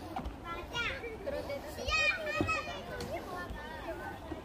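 Children's high-pitched voices calling and chattering, with other people's voices murmuring in the background.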